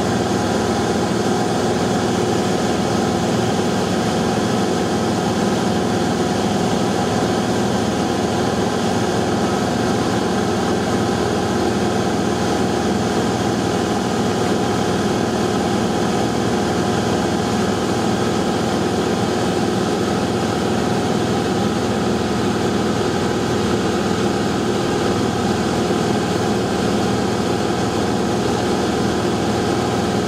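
Steady engine drone of an aircraft heard from inside the cabin: several held tones over a dense rushing noise, with no change in pitch or loudness.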